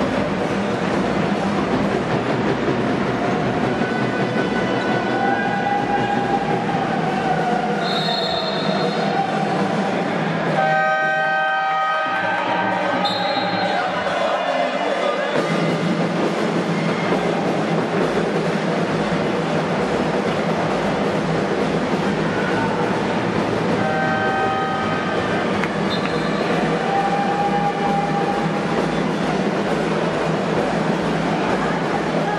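Steady, loud background noise of an indoor basketball game in a sports hall. Short high squeaks come and go over it, and a brief pitched signal tone with several notes sounds about 11 seconds in, shortly before the players line up for free throws.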